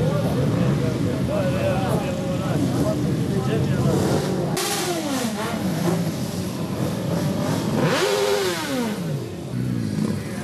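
Motorcycle engines running among crowd voices, then twice a motorcycle engine is revved, about five and eight seconds in, its pitch falling away after each rev.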